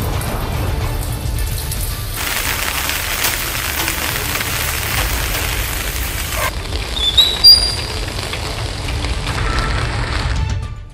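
Rain hiss with a steady low rumble under a background music bed; the hiss grows loud and then cuts off sharply partway through. A few short, high, rising chirps come about seven seconds in and are the loudest sound.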